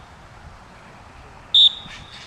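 A coach's whistle blown once about one and a half seconds in, a short, shrill blast that trails off, over faint open-air field noise.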